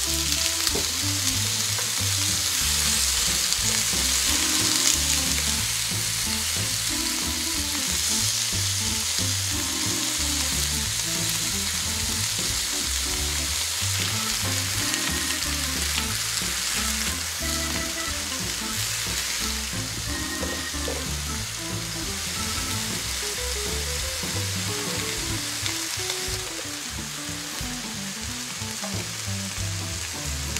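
Sausages, mushrooms and pork belly sizzling in oil on a nonstick griddle pan, a steady dense sizzle that eases slightly in the last few seconds.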